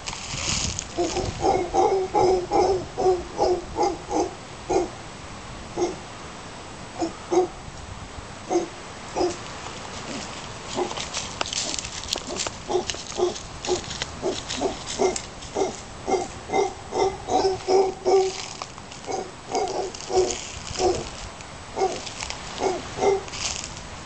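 Mantled howler monkeys calling: a long run of low, rhythmic grunts, about three a second. The grunts come in two long bouts, with a few scattered grunts in between.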